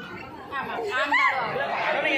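Chatter of several people's voices talking at once, picking up about half a second in.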